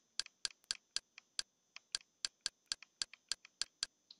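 Short, sharp button clicks in a quick, uneven series, about five a second, as a menu list is scrolled down with repeated presses.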